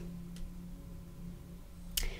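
A pause between speech: quiet room tone with a steady low hum, a faint tick about half a second in and a sharper click at the very end.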